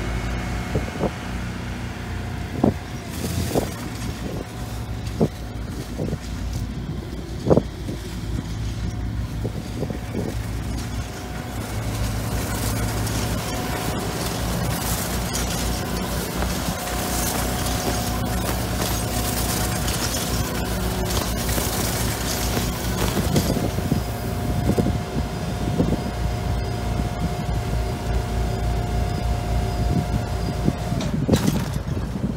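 An in-line round bale wrapper at work alongside a tracked skid-steer loader: engines running steadily, with scattered sharp knocks over the first several seconds and a steady high whine in the second half.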